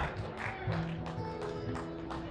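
A live band playing quietly in a pause between sung lines: guitar notes over a held low note.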